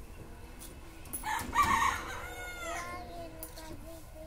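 A rooster crowing once: a single call of about two seconds, starting a little after a second in.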